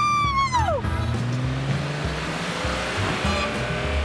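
A drawn-out shout, then a car driving fast through a large puddle, a rushing splash of water that swells to its peak about halfway through, over background music.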